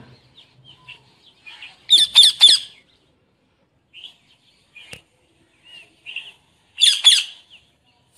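A young pet parakeet giving short harsh squawks: three in quick succession about two seconds in and another quick pair near the end, with a few faint chirps in between.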